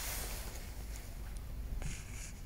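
Faint scraping of a grafting knife on the bark of a sawn-off orange sucker as it is scored for a crown graft, with a small click near the end.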